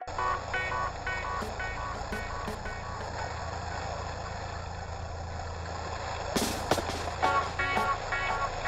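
Steady low hum of a boat engine, with music playing over it in short repeated notes. A sharp knock about six and a half seconds in.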